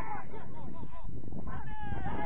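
Players and coaches shouting short calls across a soccer pitch, several voices overlapping, with a longer, slightly falling shout near the end, over a steady low rumble.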